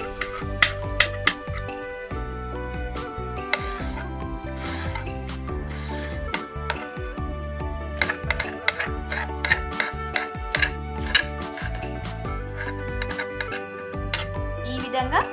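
Background music, with a knife cutting peeled ridge gourd into small pieces: short sharp clicks in the first couple of seconds and again in a run from about eight seconds in.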